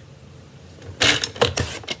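A paper trimmer's cutting blade slid along its track, slicing through a sheet of designer paper: a short, scratchy run of scraping clicks starting about a second in and lasting about a second.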